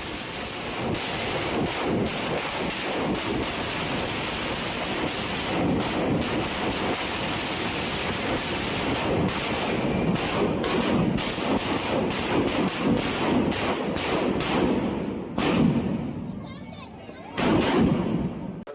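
A 20-foot Narakasura effigy packed with some 200,000 firecrackers goes off in a dense, continuous crackle of bangs. The bangs ease off briefly near the end, then come back in a loud burst.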